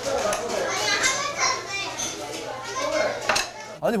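Dishes and cutlery clinking at a meal table amid indistinct background chatter, with a sharp knock about three seconds in.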